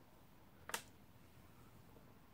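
A single sharp click about three-quarters of a second in, otherwise near silence.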